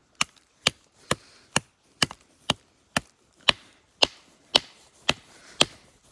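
A wooden stick jabbed repeatedly into a hole in creek ice, chipping it open down to the water. There are twelve sharp, evenly spaced strikes, about two a second.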